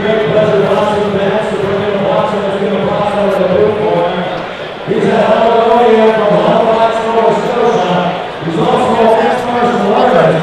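A single voice singing slow, long-held notes in three phrases, with short breaks about four and a half and eight and a half seconds in.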